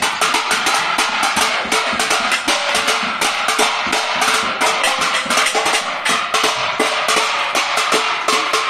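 Steel plates, pot lids and a metal satellite dish being beaten rapidly with spoons by several people at once: a continuous, irregular metallic clanging of many strikes a second, with the plates ringing on between blows.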